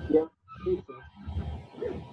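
NWA3D A5 3D printer's stepper motors running as it prints its first layer, their pitch shifting up and down as the print head changes moves.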